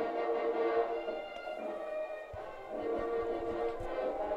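Music of long, held notes, broken by a short pause about two seconds in, heard faintly under the broadcast.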